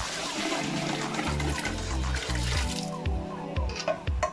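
Broth poured from above into a large aluminium pot of yellow-coloured glutinous rice, splashing steadily and stopping about three seconds in. Background music with a steady beat plays under it.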